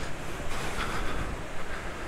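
Wind buffeting the microphone: a gusty, uneven rumble over a steady rushing hiss.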